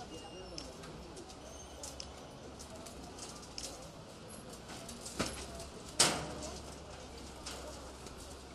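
Bird calls in the street, with two sharp knocks; the second, about six seconds in, is the louder.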